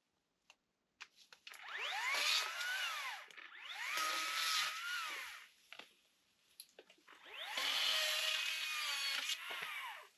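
Small cordless electric chainsaw cutting through bamboo stems in three bursts. Each time the motor whine rises as it spins up and falls away as it is released.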